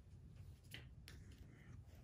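Near silence: room tone with a few faint clicks from a phone being handled.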